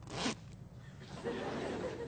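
Two quick rasping sounds: a short sharp one just after the start and a longer, rougher one from about a second in.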